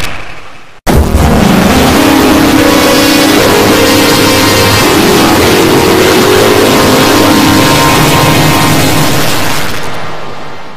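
A logo's sound heavily processed with audio effects, loud and distorted: a dense noisy wash with a few held tones. The previous logo's sound fades and cuts out within the first second, and the new one starts abruptly just after, fading again near the end.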